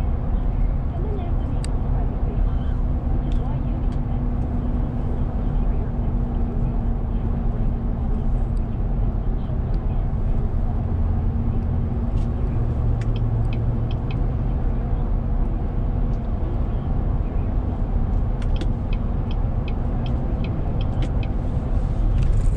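Road noise heard inside a car cruising at highway speed: a steady rumble of tyres and engine, with a faint steady hum through the first half and a few light ticks near the end.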